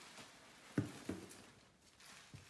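Rustling of plastic bubble-wrap packaging and a cardboard box as hands rummage through it, with two short knocks about a third of a second apart a little under a second in, the first the louder.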